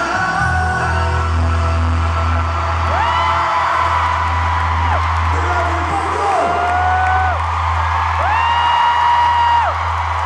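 Live boy-band vocal pop played over a big concert PA, with a low note held steady under the music as the song closes. Fans close to the microphone scream twice in long high shrieks that slide up, hold and drop away.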